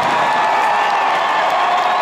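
Large arena crowd cheering and screaming, a steady wall of voices with a few long high held screams standing out.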